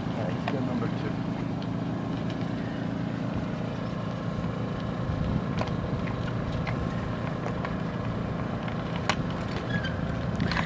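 A steady low engine hum, with a few light clicks, the sharpest about nine seconds in.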